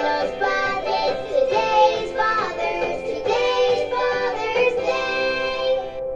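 A children's song with a sung melody over cheerful instrumental backing.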